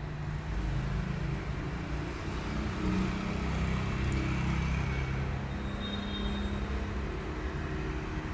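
Background road traffic: a steady low rumble of engines.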